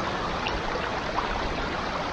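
Thermal spring water running over the travertine terrace edges and through the shallow pools, a steady rushing.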